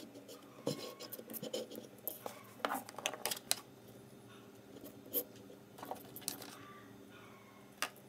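Hands handling thin insulated hookup wires: scattered small clicks, scratches and rubs as the leads are moved about. The sounds are busiest in the first few seconds and sparser afterwards, with one sharp click near the end.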